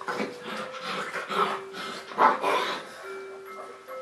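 Seven-week-old Saint Bernard puppies vocalising in several short bursts as they play-fight, the loudest a little over two seconds in. Soft background music with held notes plays underneath.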